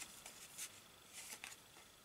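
Near silence, with a few faint, soft rustles of a small paper card being handled in the fingers.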